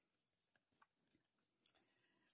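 Near silence, with only a few very faint, brief ticks.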